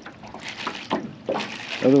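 Water lapping against a small aluminium jon boat's hull, with a few irregular soft knocks, then a man's voice near the end.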